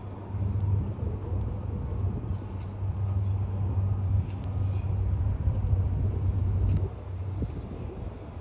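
Low, steady rumble of a train on the track, dropping away about seven seconds in.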